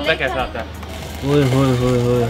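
Talk trails off, then a little past a second in a voice sets in on one long drawn-out note, an 'ooh', held steady at one pitch.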